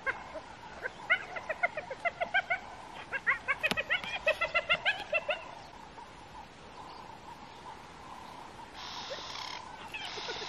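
A rapid, evenly paced run of short pitched animal calls, about four a second, lasting a few seconds, then a soft hiss near the end.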